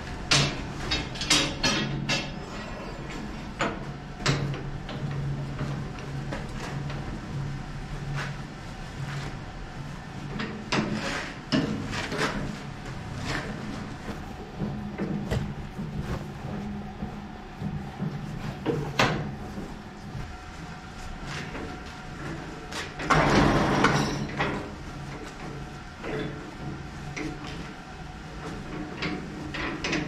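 Electric three-roll section bending machine running with a low hum that starts and stops, as a 30 × 10 mm steel flat bar is rolled through it, with scattered metallic clunks and knocks. A loud, harsh noise lasting about a second comes about two-thirds of the way through.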